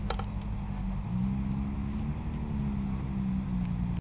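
A low, steady engine hum that comes in about a second in, swells slightly in the middle and eases off, over a low rumble of wind on the microphone.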